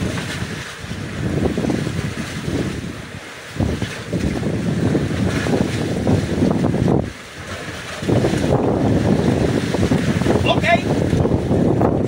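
Wind buffeting the microphone over open sea, a loud low rumble with water washing around the boat's hull. It drops away briefly twice, about three and seven seconds in.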